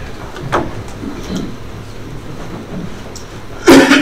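Meeting-room background hum with a few faint knocks and shuffles as a man walks up to a podium, then a brief loud bump near the end.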